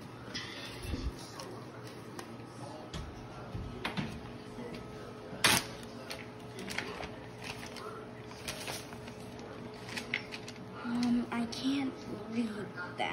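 Paper being handled and torn open: scattered crinkles and rustles, with one loud, sharp rip about halfway through.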